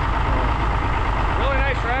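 Farmall 560's rebuilt six-cylinder diesel engine idling steadily with a low, even chug. It runs smoothly, as a rebuilt motor in good health does.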